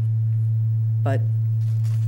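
Loud, steady, low-pitched electrical hum that does not change, with one short spoken word about a second in.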